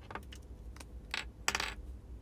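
Light taps and clicks of fingers handling a smartphone, about four of them. The loudest is a quick cluster about a second and a half in.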